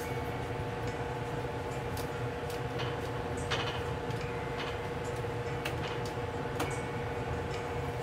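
Steady low kitchen hum with a thin, even tone, and a few light, scattered taps and clicks as corn tortillas are handled on a stovetop griddle.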